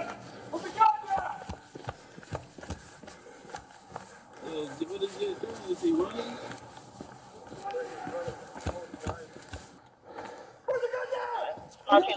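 Rhythmic running footsteps and jostling gear picked up by a police body-worn camera during a foot chase, with indistinct voices in between.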